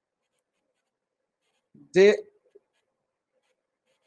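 Silence in the voice-over, broken once about halfway by a single short spoken syllable.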